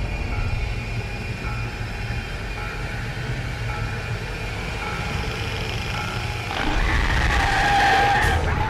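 Street traffic rumbling low under a short electronic beep that repeats about once a second, then a loud shrill screech swelling in near the end.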